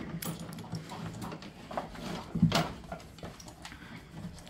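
Jersey cow feeding from a plastic feed trough: scattered knocks and rustles as she eats, with a louder knock about two and a half seconds in.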